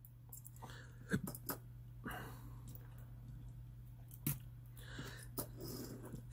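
A few light clicks and taps from small die-cast metal toy cars being handled and set down on a tabletop, with a faint scraping stretch in the middle, over a steady low electrical hum.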